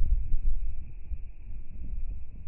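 Wind buffeting the microphone: a low, gusty rumble that swells and drops unevenly.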